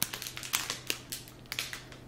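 Plastic shrink wrap around a bundle of small bags of diamond painting drills crinkling and crackling as it is handled, in a string of irregular sharp clicks.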